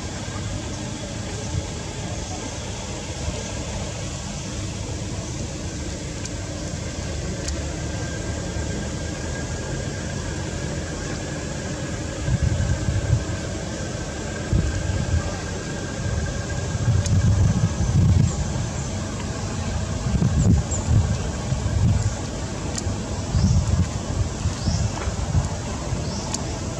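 Outdoor ambience: a steady background hiss with a faint steady high tone, then, from about halfway through, irregular low gusts of wind rumbling on the microphone.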